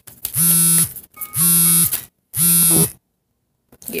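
Three loud electric buzzes of about half a second each, evenly spaced and steady in pitch, each sliding briefly up as it starts and down as it stops.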